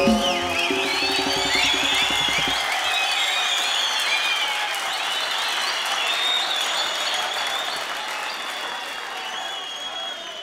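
The band's closing chord rings out for the first couple of seconds, then a studio audience applauds with high whistles, the applause slowly fading toward the end.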